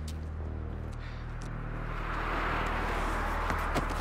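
Film-scene ambience: a steady low hum, with a rushing noise that swells through the second half and a couple of faint ticks near the end.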